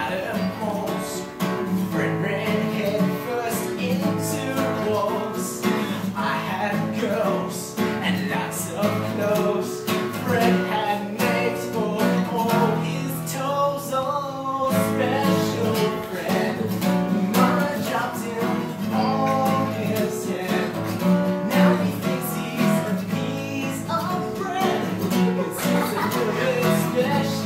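A steel-string acoustic guitar strummed steadily as accompaniment while a young man sings a comedy song over it.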